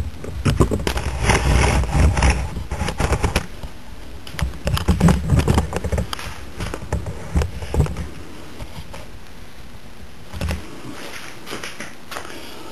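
Handling noise of the camera being moved around the equipment: a dense run of rapid clicks, knocks and scrapes with rumbling bumps for most of the first eight seconds. It then settles to a steady low hiss, with one more knock near the end.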